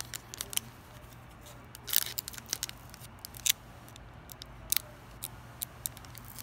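Foil wrapper of a Pokémon TCG booster pack crinkling in the hands as it is torn open, a scatter of short sharp crackles with a denser run about two seconds in.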